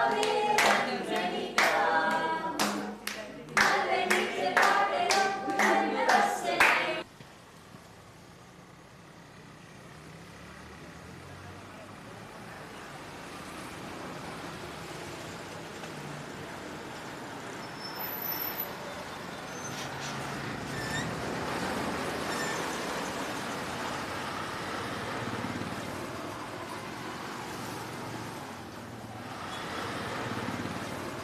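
A group claps in a steady rhythm along with singing, and both cut off abruptly about seven seconds in. A steady rushing noise follows and slowly grows louder.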